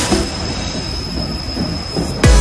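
White Pass railway train rolling, heard from aboard in an enclosed dark stretch: a steady rumble of the running gear with a thin, steady high-pitched wheel squeal over it.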